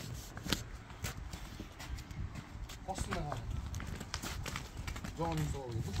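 A cow's hooves clopping on asphalt as it is led along at a walk, with irregular hard knocks.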